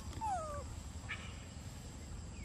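A macaque gives one short coo that falls in pitch, followed about a second in by a brief faint chirp.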